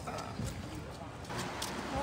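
Street ambience of indistinct passers-by talking, with a few light, sharp clicks of footsteps on brick paving.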